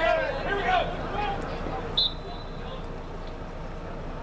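Distant shouting voices from the field, then a single short, sharp blast of a referee's whistle about halfway through, over a steady open-air background hum.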